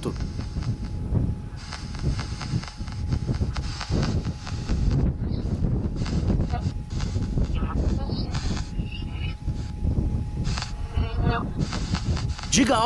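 Handheld ghost-hunting communication device (spirit box type) playing choppy static through its speaker, with rapid irregular bursts of hiss cutting in and out and a faint steady tone underneath.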